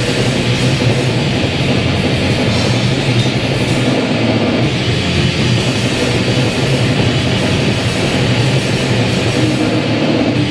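Heavy metal band playing live, loud distorted electric guitars over a drum kit.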